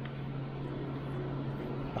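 A steady low hum with a faint hiss and no clear clicks or crunches.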